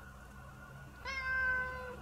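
A domestic cat meowing once, about a second in: a single clear call held for nearly a second, its pitch easing slightly downward.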